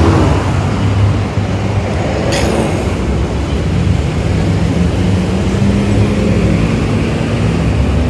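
City street traffic: cars and a bus running and passing, with a steady low engine drone and a brief sharp hiss about two seconds in.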